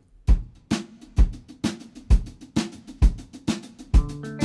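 Drum kit playing a steady groove on its own, bass drum and snare hits alternating about twice a second with cymbal on top, counting the song in.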